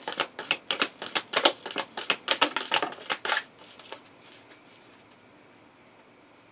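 A deck of tarot cards shuffled by hand: a quick, uneven run of card slaps and clicks for about three and a half seconds, then it stops.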